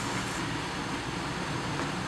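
A pause in speech filled with steady room noise, an even hiss with no distinct events.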